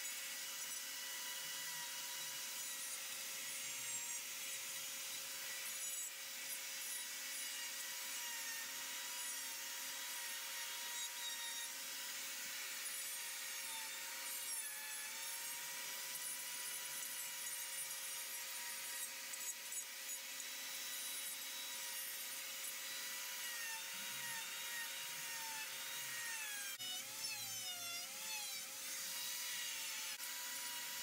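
Electric die grinder with a carving bit, running at a steady high whine as it grinds into wood. Its pitch dips briefly each time the bit bites under load, most often near the end.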